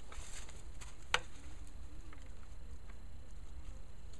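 Light handling noises over a steady low rumble of wind on the microphone, with one sharp click about a second in as the bullet and ruler are handled at the bench.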